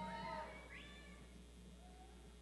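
Faint high-pitched whoops from audience members, a few voices arching up and down, one sliding upward just under a second in, then fading out.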